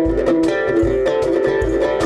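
Oud played in an instrumental passage: a quick run of plucked melody notes over a regular deep low note.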